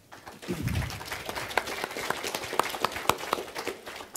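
Audience applauding: dense clapping swells up about half a second in and dies away near the end. A low thump sounds early in the applause.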